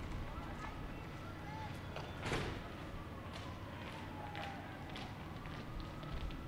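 Quiet open-air ballpark ambience between pitches, with faint distant voices. One sharp knock comes about two seconds in.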